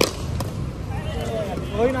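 A sharp knock from the cricket ball in play, followed by a fainter knock about half a second later; voices follow over a steady low rumble.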